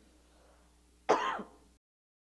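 A man clears his throat once, briefly and loudly, about a second in.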